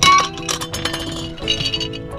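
Glass clinks as raisins are shaken out of a glass mason jar into a bowl, a few sharp chinks, over background music with plucked guitar.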